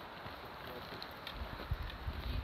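Faint outdoor wind noise on the microphone, with a few light clicks and low buffeting rumbles in the second half.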